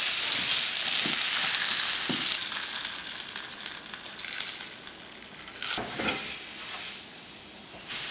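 Butter and olive oil sizzling in a frying pan with trout in it, the sizzle dying down over the first five seconds. A few light clicks and one sharper knock about six seconds in, the sounds of utensils on the pan.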